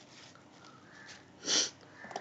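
A person sniffing once, a short noisy intake through the nose about one and a half seconds in, in an otherwise quiet room.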